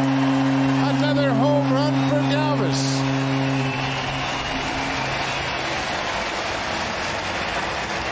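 A ballpark crowd cheering a home run, with a low, steady horn blast held over it that fades away about halfway through. A few voices rise over the crowd in the first few seconds.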